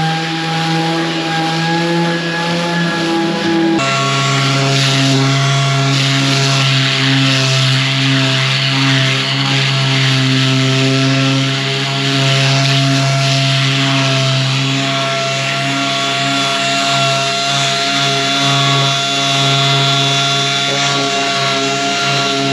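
Mirka orbital sander running continuously against the edge of a gloss-faced plywood cupboard door, putting a small 45-degree bevel on it so the T-trim can be knocked on without chipping the coating. A steady motor hum with sanding hiss; the hum drops in pitch about four seconds in as the sander bears on the work, then holds.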